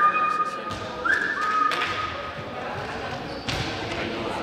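Someone whistles twice, two short falling two-note calls about a second apart, in a large echoing sports hall. A few thuds land on the hall floor, the loudest near the end.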